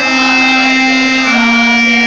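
Casio electronic keyboard playing a slow melody in long held notes with a reedy, organ-like voice, one note stepping down to the next about two-thirds of the way through.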